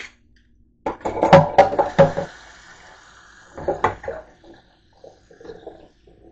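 Dishes and utensils clattering in a kitchen sink, two bursts of sharp knocks about a second in and again near the middle, with tap water running into the sink.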